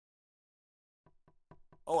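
Dead silence, then four or five faint, short clicks about a quarter second apart, just before a man starts to speak.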